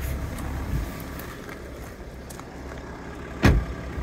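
BMW 325d's N57 straight-six diesel idling steadily, with the driver's door shutting in a single thump about three and a half seconds in.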